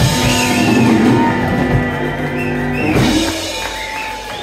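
Live band playing the closing instrumental bars of a song, with guitar gliding between notes over drum kit and sustained chords. The low end thins out about three seconds in as the song winds down.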